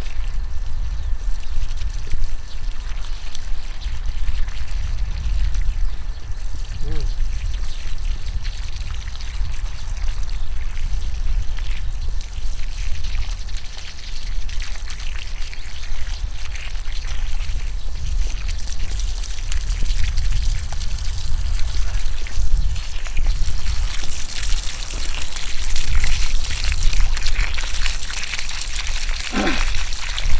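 Water from a garden hose's watering wand pouring and splashing onto the soil around young vegetable plants. A steady low rumble runs underneath, and the watery hiss grows stronger in the last several seconds.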